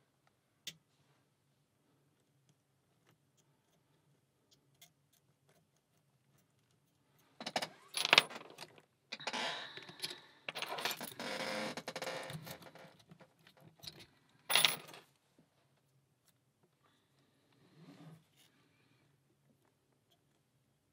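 A brass padlock and steel lock picks being handled: faint ticks of picking, then several seconds of metallic clinking and rattling, followed by one sharp metallic click.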